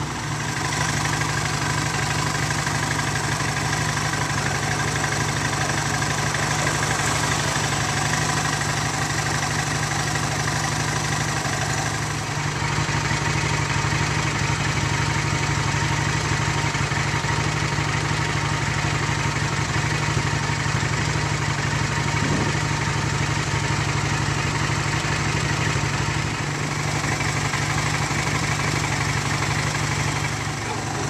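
A vehicle's engine idling steadily, heard close up, with a slight change in its sound about twelve seconds in.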